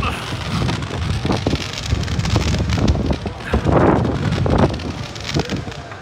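Rushing air buffeting the microphone of the camera on a Slingshot ride capsule as it swings and flips: a loud, uneven rush that swells and dips in gusts.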